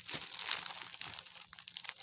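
Plastic crinkling and crackling in irregular bursts as hands handle sheets of adhesive rhinestone wrap in their clear plastic packaging.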